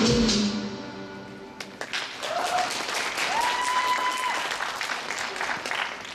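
A pop dance track fades out in the first second, followed by audience applause and cheering in a hall, with a couple of held, high-pitched cheers rising above the clapping.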